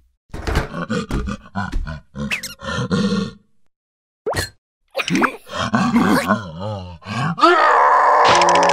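Wordless cartoon creature vocalizations: a string of grunts and groans, then a short rising squeak about four seconds in, followed by wobbling, wavering cries. Background music comes in near the end.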